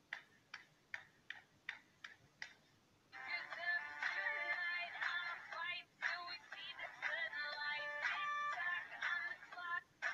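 A run of sharp, evenly spaced clicks, about three a second, then from about three seconds in, music with a melodic line, played back through a phone's speaker.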